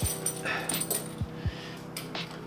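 Thin leather prong-buckle lifting belt being handled and wrapped around the waist, giving a few soft knocks, over a steady pitched tone.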